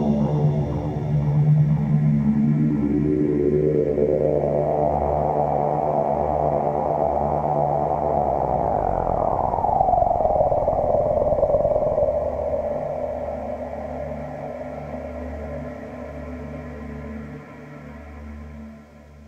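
Ambient synthesizer music: a saw-like pad from a Kawai K5000s sweeps upward over a steady low drone. About nine seconds in, a tone glides down, and the music fades toward the end.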